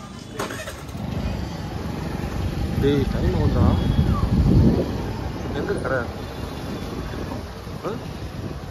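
Motorbike ride: the engine running and wind on the microphone as it moves along a street, a low rumble that swells loudest about three to five seconds in, with a few voices.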